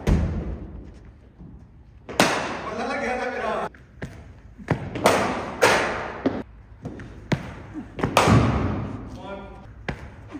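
A series of sharp thuds from a cricket ball striking the bat, the pitch and the netting in an indoor practice net. Each thud has a short ringing tail, and brief voices are heard between the deliveries.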